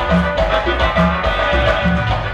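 A live dance band playing Tierra Caliente dance music, with a steady beat and a bass line alternating between two low notes.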